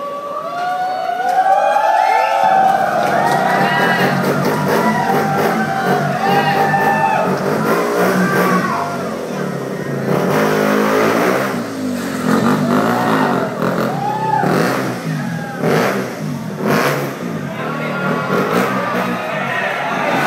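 KTM Duke 200 stunt motorcycle's single-cylinder engine revved over and over in short blips, each rising and falling in pitch, during stunt riding. Crowd noise runs underneath.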